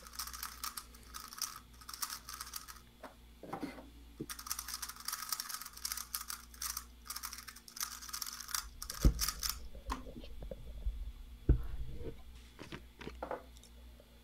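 Plastic 3x3 speedcube being turned quickly by hand: a dense run of fast clicking and rattling that thins out after about nine seconds. Two dull thumps at about nine and eleven and a half seconds are the loudest sounds.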